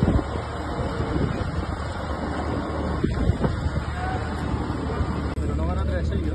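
Dockside ambience: a steady low hum and rumble with indistinct voices in the background. The sound drops out for an instant about five seconds in.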